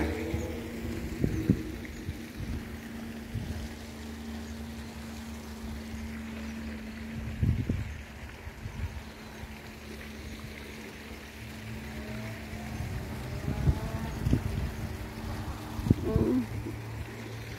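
Wind buffeting the microphone in low gusts and thumps, over a steady low hum that stops about three-quarters of the way through.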